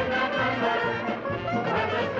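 Brass band music with trumpets and trombones over a fuller band backing, playing without a break.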